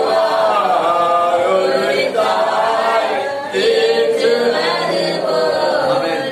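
Unaccompanied group singing of a worship song, several voices together with held, gliding notes.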